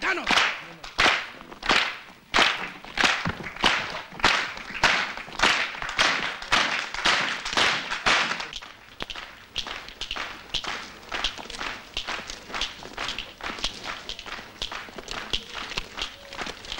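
Rhythmic flamenco handclapping (palmas): sharp, evenly spaced claps about one every 0.6 seconds, changing about halfway through to a faster, quieter pattern.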